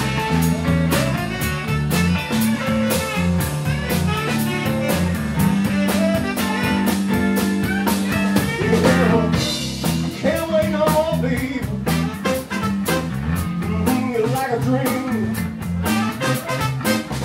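Live blues band playing a steady groove, with a tenor saxophone and electric guitar among the instruments.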